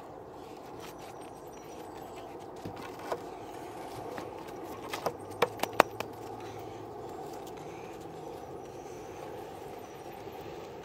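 Old clay bricks knocking and clinking against each other as they are set in place by hand, with one knock about three seconds in and a quick run of sharp clacks about five to six seconds in, over steady outdoor background noise.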